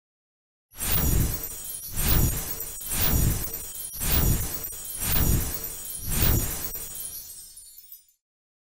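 Short outro music sting starting about a second in: about six beats, one a second, under a glassy, shimmering sparkle, fading out near the end.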